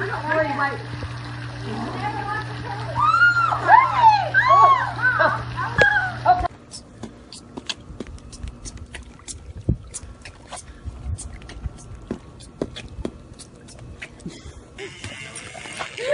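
Splashing pool water and pitched voices over a steady low hum. About six seconds in, this cuts off to a quieter stretch of scattered small clicks and water sounds.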